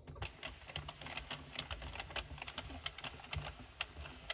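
Addi hand-cranked circular knitting machine being turned to knit rounds: its plastic needles click one after another as they pass through the carriage, about five quick clicks a second.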